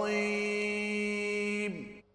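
A male qari's Quran recitation ending on one long, steady held note, which slides down and stops just before the end.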